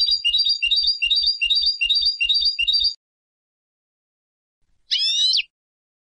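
Turkish goldfinch (European goldfinch) singing: a short, high phrase repeated rapidly, about three times a second, for three seconds. After a pause, one drawn-out call about five seconds in.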